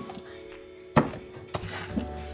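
Two knocks about half a second apart, the first louder, as a ring binder is pushed back onto a wooden cabinet shelf, over faint background music.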